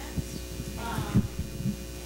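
Steady electrical hum from the sound system with a few low thumps and rustles of a handheld microphone being handled, the strongest about a second in, and a brief faint voice in the background.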